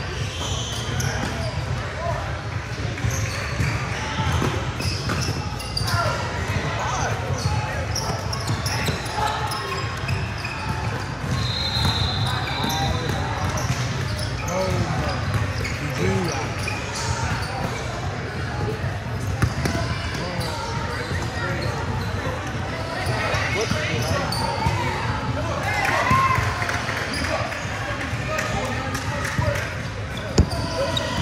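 Basketball game sounds in a large echoing gym: a ball bouncing on the hardwood floor amid indistinct calls and chatter from players and people on the sideline, over a steady low hum of the hall.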